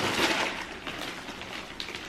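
Gift wrapping paper and tissue paper crinkling and rustling as a present is pulled open, loudest in the first half-second, then lighter crackling.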